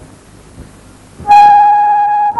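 Faint hiss for about a second, then a loud flute note from the film's score cuts in sharply and is held steady.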